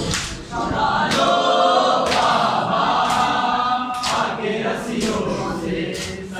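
A group of men chanting a nauha, a Shia lament, together in unison. Sharp beats land about once a second in time with the chant.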